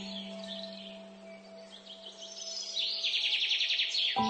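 Relaxing piano music: a held chord slowly fading, with recorded birdsong mixed over it. A few chirps come about half a second in, and a fast, high bird trill starts near the end.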